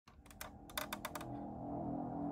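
A quick run of about eight sharp clicks in the first second or so, then soft ambient background music fading in.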